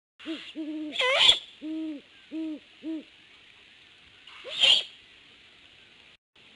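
Great horned owl hooting a series of about five deep, even hoots. Two loud raspy screeches break in, one about a second in and another near the end.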